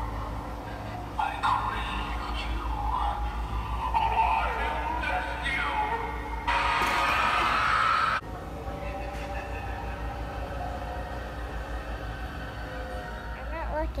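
Animatronic clown prop playing a recorded voice over music. A loud hiss cuts in about six and a half seconds in and stops abruptly after about a second and a half, followed by steady held musical tones.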